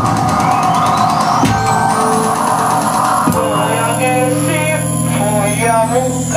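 Live experimental electronic music: a high tone sweeps upward for about two seconds over a dense sustained drone. About three and a half seconds in, a low steady hum comes in, with wavering pitched sounds above it.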